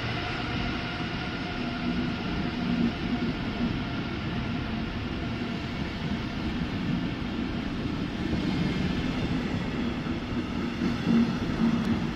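Passenger coaches of a Deutsche Bahn Intercity train rolling past along a station platform, a steady rumble of wheels on the rails.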